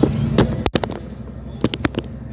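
Sharp clicks and knocks, several in two seconds, from the phone being handled and swung around. Under them runs the steady low rumble of a moving car, and the sound cuts out completely for an instant about two-thirds of a second in.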